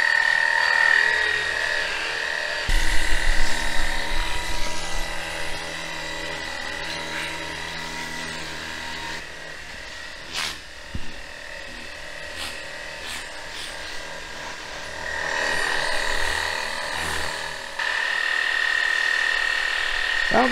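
Lithium-battery cordless pressure washer (Sunglife Hydroshot) running, its small electric pump whining steadily while spraying soapy water onto a fabric screen shelter. The whine falls away for several seconds near the middle and starts again toward the end.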